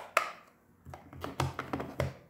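Hands handling cardstock pieces on a table: a sharp tap just after the start, then a run of taps, knocks and rubbing from about a second in.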